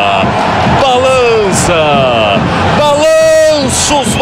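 A man's voice shouting excitedly over a goal, in repeated falling calls, with one long held shout about three seconds in.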